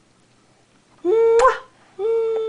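A hummed "mmm" kissing sound, held on one pitch about a second in and ending in a lip smack, coaxing a kiss; another begins at the very end.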